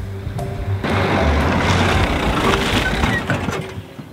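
Background music, then from about a second in a car rolling up on a gravel road, a noisy crunch of tyres that lasts about two seconds and fades out near the end.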